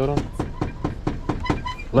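Rapid knocking: a quick, even run of sharp knocks, about six a second.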